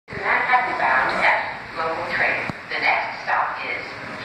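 A voice speaking throughout, the words indistinct, with one sharp click about two and a half seconds in.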